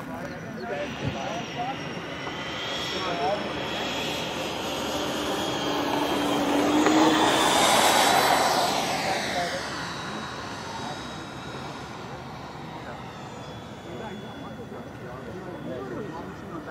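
Four electric ducted fans of a Freewing AL-37 RC airliner whining on a fast flyby. The sound builds to its loudest about eight seconds in, then drops in pitch as the model passes and fades away.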